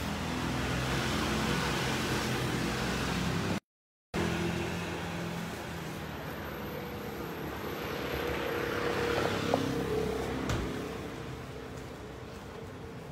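Street traffic: motor vehicles passing, the engine and road noise swelling and fading twice. A brief gap of total silence comes a few seconds in.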